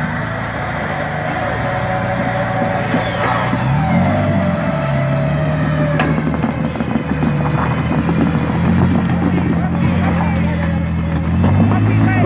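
Jeep Wrangler engine running at low revs as it crawls up a rock ledge on a taut winch line, with a brief rev that rises and falls about four seconds in.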